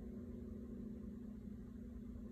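A steady low hum over faint background noise: kitchen room tone, with no distinct events.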